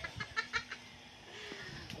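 A quick run of short, sharp animal calls in the first second, then a quieter stretch with a faint low steady hum.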